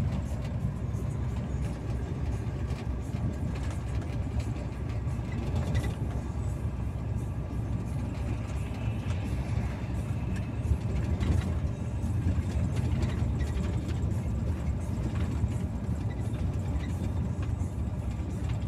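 Steady low rumble of a truck's engine and tyres on the road, heard from inside the cab while driving along the highway.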